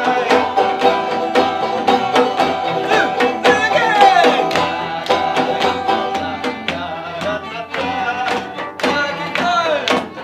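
Acoustic band playing an upbeat tune: banjo picking over bowed cello and violin, with a steady rhythmic beat.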